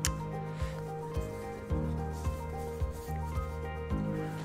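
Magic: The Gathering cards being slid one at a time off the front of a hand-held stack, a light papery rub about every half second, over quiet background music.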